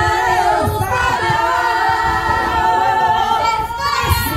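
A woman singing without accompaniment, holding long drawn-out notes.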